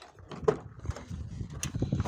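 Car door being opened by its outside handle: a sharp latch click about half a second in and a lighter click later, over low rumbling handling noise.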